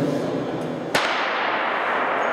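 Starter's gun fired once about a second in to start a sprint race, the crack followed by a long echo in a large indoor hall.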